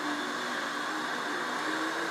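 Steady background hiss with a faint low hum and no voices.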